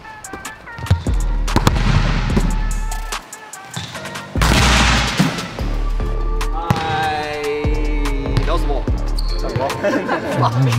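Background music with a heavy bass beat. A volleyball is spiked into the hardwood gym floor with a sharp smack about a second in, and excited shouting comes in the second half.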